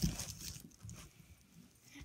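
A soft thump close to the microphone at the start, then faint rustling and movement noises.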